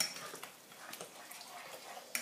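Silicone spatula stirring thick chili sauce in a saucepan: faint, wet scraping and squelching, with a sharper tap right at the start.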